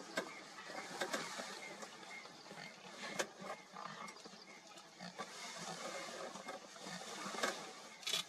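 Faint open-air field ambience: a steady low hiss with scattered sharp clicks and faint short repeated chirps.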